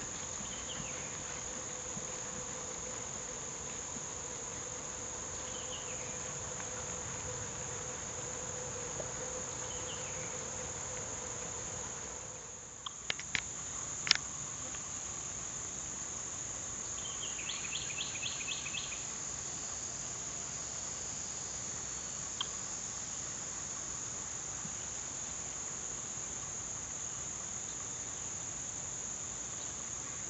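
Steady, high-pitched chorus of insects, unbroken throughout, with a few short bird chirps and a brief rapid trill. A couple of sharp clicks near the middle stand out as the loudest sounds.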